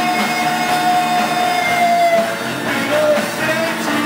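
Live punk-blues band playing: electric guitar, bass and drums with vocals. A long held high note ends about halfway through.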